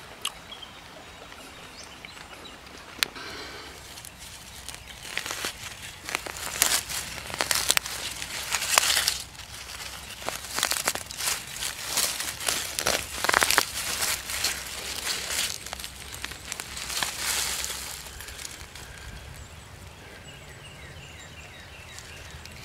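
Irregular rustling and crackling of dry leaf litter and woodland undergrowth as someone moves through it, from about four seconds in until a few seconds before the end, over a steady outdoor background.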